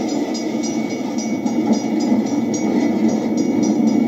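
A Missouri Pacific welded-rail train moving along the track: a steady rumble with a rapid clicking of about four clicks a second and a faint steady high tone.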